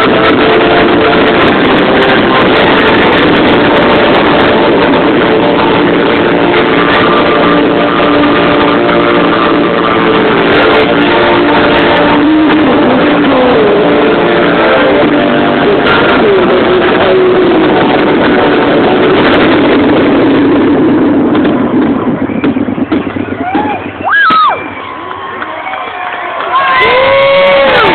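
Fireworks finale: a dense, continuous barrage of bursts mixed with display music, loud enough to overload the recording. It dies away about 21 seconds in, and near the end a single rising whoop comes from the crowd.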